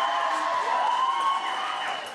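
Crowd of guests cheering, with several voices holding long high calls over a general hubbub.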